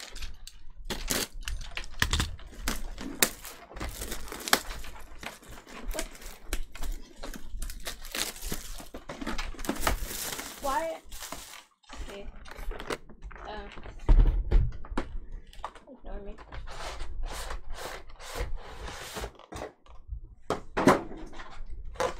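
Pokémon card premium collection boxes being handled and pried open: a busy run of clicks, crinkles and knocks from cardboard and plastic packaging, with a louder thump about 14 seconds in.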